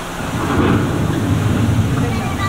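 Deep rolling rumble like thunder comes up about a third of a second in and keeps going over a steady rain-like hiss: the ride's storm sound effects.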